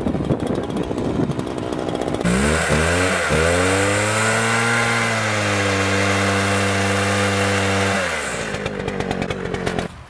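Ryobi chainsaw revving up twice about two seconds in, running steadily at speed, then winding down about eight seconds in. Crunching and rustling come before and after it.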